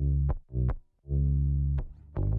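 Mix playback of a bass line and kick drum with sidechain compression from the kick on the bass: the bass ducks out each time the kick hits, a pumping effect that sounds a bit exaggerated.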